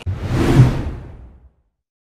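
A whoosh sound effect for an edit transition: a deep, noisy swoosh that starts suddenly, swells to a peak about half a second in, and fades away by about a second and a half.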